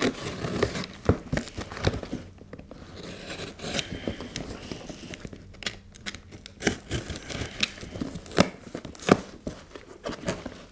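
Box cutter slicing through packing tape and cardboard on a shipping box, then the flaps being torn open: irregular scraping and tearing with several sharp clicks.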